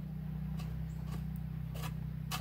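Three faint clicks of small pebbles being pushed with a fingertip across the bottom of a plastic gold pan full of wet paydirt, over a steady low hum.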